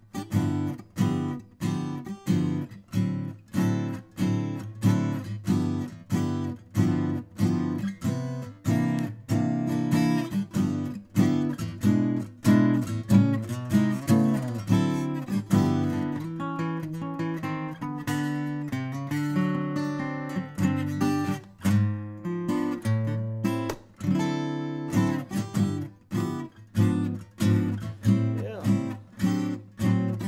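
Furch Yellow Series OMc-CR short-scale acoustic guitar, cedar top with rosewood back and sides, played fingerstyle: a steady flow of picked notes and chords, about two attacks a second, each left ringing into the next.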